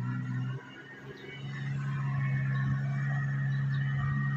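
A steady low engine hum that drops briefly about half a second in, then resumes and holds steady.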